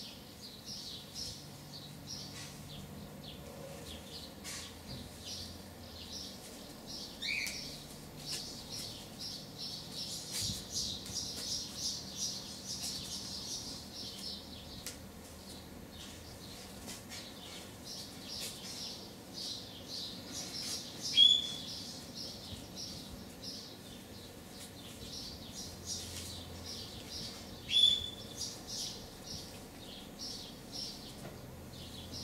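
Small birds chirping continuously in quick series of short high notes, busiest in the first half. Two louder single calls stand out, about seven seconds apart, in the second half.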